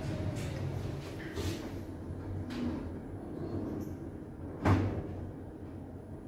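Schindler 2600 freight elevator's car doors closing: a low hum with a few light clicks, then one loud clunk about three-quarters of the way through.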